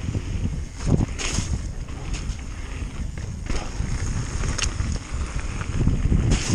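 Mountain bike riding down a loose gravel trail: wind buffeting the onboard camera's microphone as a low rumble, over tyres crunching on gravel and scattered clicks and rattles from the bike.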